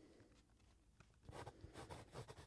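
Soft, quick sketching strokes on a paper pad: a fast run of short scratches starts a little past a second in, after a faint quiet stretch broken by a single tick.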